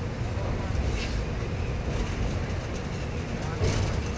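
Steady low rumble of a passenger train running across a steel truss bridge, heard from inside the coach, with a couple of sharp clacks about a second in and near the end.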